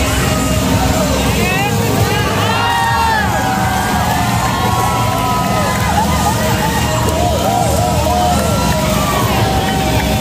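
Motorcycle engine running hard as the bike circles the wooden wall of a wall of death drum, its pitch rising and falling, with crowd voices and cheering over it.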